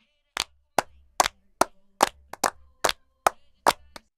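Isolated percussion track: about ten short, sharp, dry hits at an even pulse of roughly one every 0.4 s, with two coming close together near the middle.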